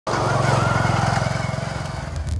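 Motorcycle engine running close by, a steady low chugging that eases off a little toward the end.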